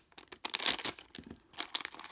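A thin plastic LEGO minifigure blind bag crinkling and tearing as it is handled and ripped open. The irregular crackles start about half a second in.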